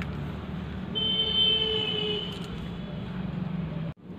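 Steady low hum of a vehicle, with a held higher-pitched tone from about one second in until about two and a half seconds. The sound cuts off abruptly just before the end.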